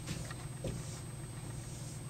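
Faint strokes of a dry-erase marker drawing straight lines on a whiteboard, over a low steady room hum.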